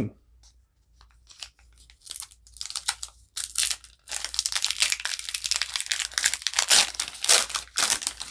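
Foil wrapper of a Pokémon TCG booster pack crinkling as it is picked up and handled. From about four seconds in it is torn open across the top, with dense crinkling as the cards are worked out of it.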